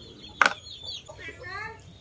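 A sharp clack about half a second in as a ceramic rice bowl is set down on a stone tabletop. Birds chirp in the background, and a short wavering animal call follows in the second half.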